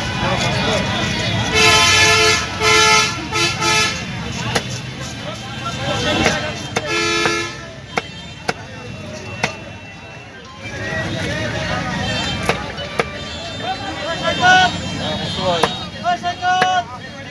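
A vehicle horn tooting in several short blasts about two to four seconds in, and once more about seven seconds in. Later come a few sharp knocks of a knife chopping fish on a wooden block.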